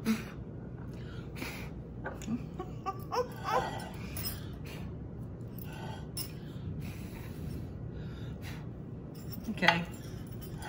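A woman chuckling and murmuring softly in short, scattered bursts, over a steady low room hum.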